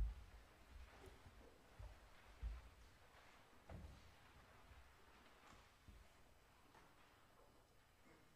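Near silence: hall room tone with a few faint, short low thumps, the loudest right at the start.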